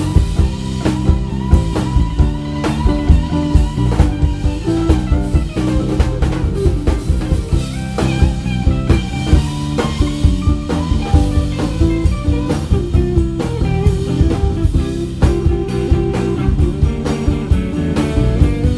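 Live band playing an instrumental passage, electric guitars over a drum kit keeping a steady beat.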